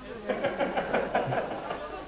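Several people laughing together, their voices overlapping in quick pulses, fading away near the end.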